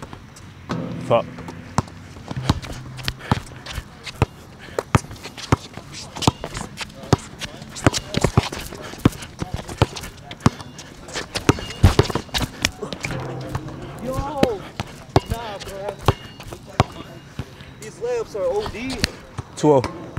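A basketball being dribbled on an outdoor hard court: repeated sharp bounces at an uneven pace.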